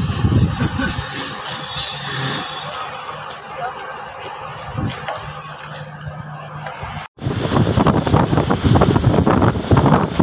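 Passenger train running, heard from an open coach doorway: low rumble of the wheels on the track with a steady low hum. After a sudden break about seven seconds in, it turns louder and rougher, with wind buffeting the microphone over the clatter of the moving coach.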